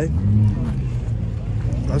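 A car engine idling nearby, a steady low rumble.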